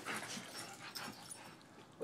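Faint sounds from two boxer dogs at play, fading lower in the second half.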